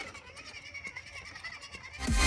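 An RC rock crawler's electric motor and gears whine, the pitch wavering with the throttle as the truck climbs a wooden ramp. Faint ticks come from its tyres on the wood and the blocks.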